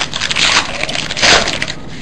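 Foil trading-card pack wrapper being torn open and crinkled by hand, with two louder spells about half a second and a second and a half in.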